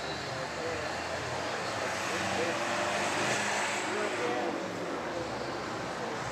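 Background voices of people talking over a steady rushing noise, a little louder in the middle.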